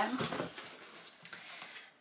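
Paper and cardboard packaging rustling faintly as a box is unpacked by hand, with a few small clicks.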